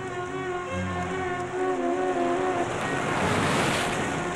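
Sea surf breaking on a beach, a wave surging up and growing louder toward the end, under sustained film-score music with long held notes.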